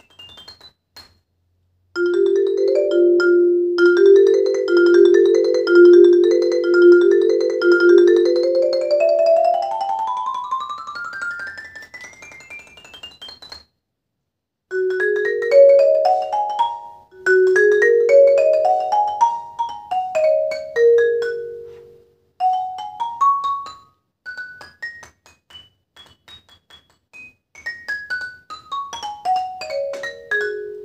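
Large concert xylophone with wide bars, struck with two yarn-headed mallets. About two seconds in it starts with a repeated low figure, then plays quick scale runs up and down the bars, with short pauses between phrases.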